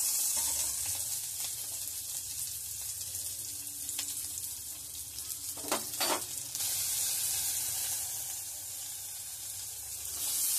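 Shallots and green chillies sizzling in hot oil in a metal kadai as they are stirred with a perforated spoon. There are two sharp knocks of the spoon against the pan about six seconds in.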